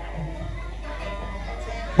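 Soft instrumental music from a live traditional Vietnamese band, with faint held notes.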